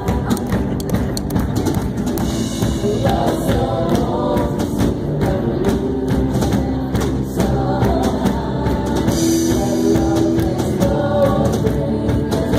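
A live worship band playing: several voices singing together into microphones over electric guitar and a drum kit.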